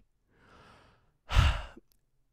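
A man breathing into a close headset-style microphone: a soft inhale, then an audible sighing exhale of about half a second.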